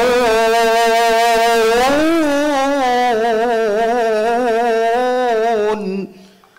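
A man reciting the Qur'an in the melodic tilawah style, holding one long ornamented vowel with a quavering pitch. The note climbs higher about two seconds in, holds again, and breaks off just before the end.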